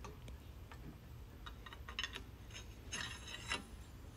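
Faint, scattered light clicks and taps of a bicycle quill stem and handlebar being handled and fitted into the head tube.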